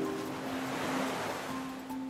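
Soft background music of held, sustained notes, with a swelling rush of noise that builds to a peak about a second in and then fades away.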